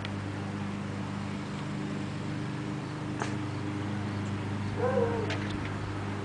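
Steady low hum, with a few sharp metallic clicks from the mailbox door and lock about three seconds and about five and a half seconds in. About five seconds in there is a short pitched squeal that rises and falls.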